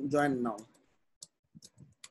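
Computer keyboard keystrokes as a word is typed: a few separate clicks, starting a little over a second in.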